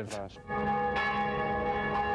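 Church bell ringing. It comes in about half a second in, and its many tones ring on steadily, with a fresh strike about a second in.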